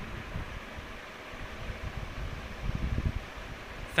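Steady fan-like background noise with irregular low rumbling from air or handling on the microphone.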